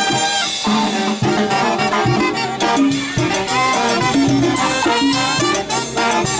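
Live brass band playing a Latin dance tune: trumpets and other brass carry the melody over congas, timbales and sousaphone bass, with a steady rhythm.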